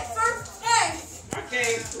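Children's and adults' voices talking and calling out over each other, with a high child's shout about two thirds of a second in.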